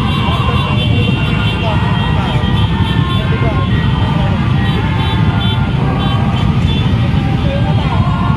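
Dozens of motorcycle engines running together as a dense caravan rolls slowly past, a steady loud rumble with people's voices mixed in over it.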